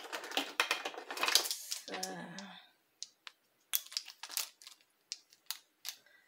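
Small kitchen items being handled: a quick run of clicks and rustles at first, then scattered sharp plastic-sounding clicks, such as a measuring spoon and a bottle being picked up and readied.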